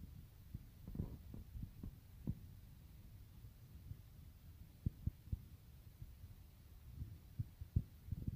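A stick prodding along a floor and skirting board, making faint, irregular dull knocks over a low hum.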